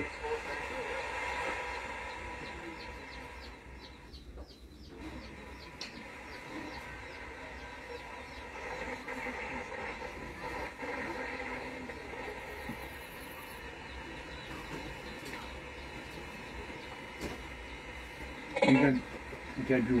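Small portable radio being tuned: faint static and hiss with weak, wavering tones between stations. A louder burst of sound comes through near the end as a station comes in.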